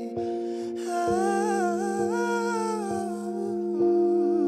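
A slow pop ballad cover: a singer hums a wavering, wordless melody over sustained keyboard chords, the humming fading out about three seconds in while the chords keep ringing.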